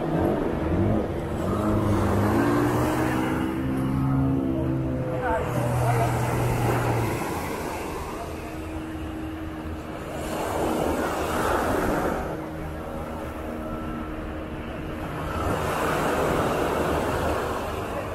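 Motorboat engines running just offshore: one rises in pitch about a second in and holds steady for several seconds, and a second, higher engine tone runs through the middle. Waves wash onto the beach in swells every few seconds.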